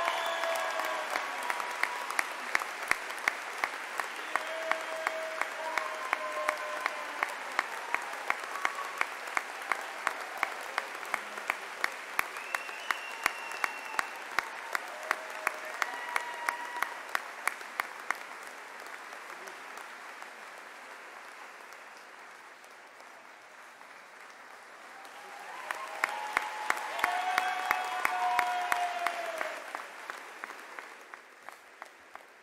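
Audience applauding, with one person clapping steadily and loudly close to the microphone, about two or three claps a second, and voices calling out over it. The applause thins out about two-thirds of the way through, then swells again with more calls near the end.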